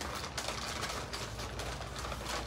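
Paper takeaway bag rustling and crinkling without a break as a hand rummages inside it.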